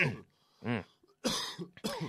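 A man coughing: a brief throat sound, then two harsh coughs in the second half.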